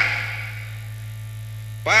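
A pause in a man's speech over a loudspeaker system. His last word echoes and fades, leaving a steady low hum, and he starts speaking again near the end.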